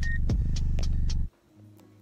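A woman humming a low, steady, meditation-style "mmm" with closed lips, stopping abruptly about a second in.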